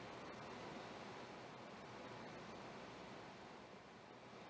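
Near silence: faint, steady hiss of room tone with no distinct events.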